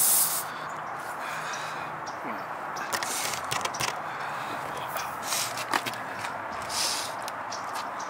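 A loud hiss of air escaping from a punctured tire stops just after the start. Then a tire-plug reamer is worked into the puncture in the tread, its rasp scraping the rubber, with a few short hisses of air and small clicks.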